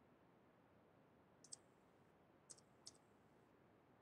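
Near silence broken by three faint, short clicks from computer input while code is edited: one about a second and a half in, then two more close together near the end.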